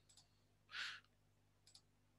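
Near silence with a few faint clicks, and one short breath-like hiss a little under a second in.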